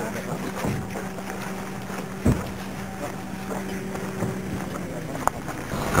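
Outdoor location sound: a steady low hum under wind noise on the microphone, with a single thump about two seconds in and a short click near the end.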